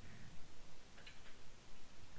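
A few faint, unevenly spaced ticking clicks over low room noise.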